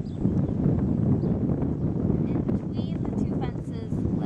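Steady wind noise buffeting the microphone, with indistinct voices in the background partway through.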